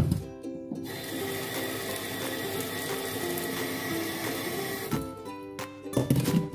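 Kitchen mixer tap running water into a cooking pot of corn cobs in a stainless steel sink, starting about a second in and cut off about a second before the end, over background music.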